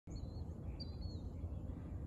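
Outdoor ambience: a low steady background rumble with two short, high bird calls, one just after the start and one about a second in.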